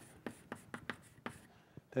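Chalk writing on a blackboard: a run of short taps and scratches, about four a second, as symbols are written.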